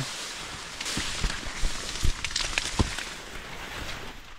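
Corn leaves rustling and brushing against a person pushing into the rows, with a few sharp crackles scattered through it.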